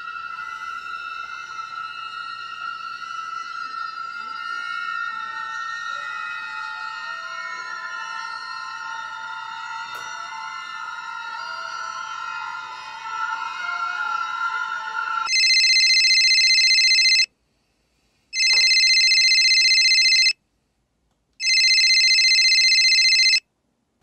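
Eerie ambient music of long held tones, then a mobile phone's electronic ringtone rings loudly three times, each ring about two seconds long with a second of silence between.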